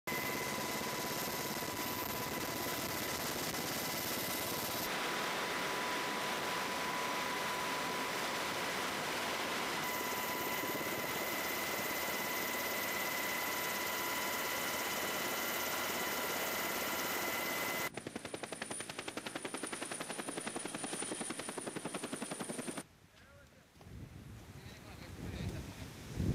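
Helicopter noise: a steady roar with constant high whining tones, as heard aboard in flight. Near the end this gives way to the rapid, even chop of the rotor blades, which drops away shortly before the end.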